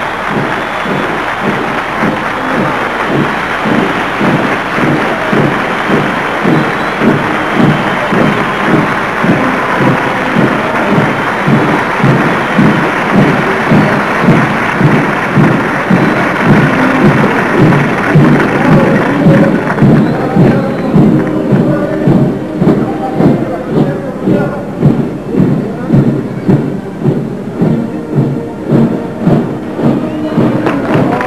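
Band music with a steady drum beat of about two beats a second, under crowd cheering and applause that dies away about two-thirds of the way through.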